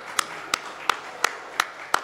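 Slow, even hand clapping, a single sharp clap about three times a second, with faint voices underneath.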